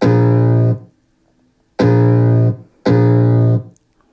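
Tribit Stormbox Blast Bluetooth party speaker playing music loud: three long held low notes, all on the same pitch and each just under a second long, separated by short silences.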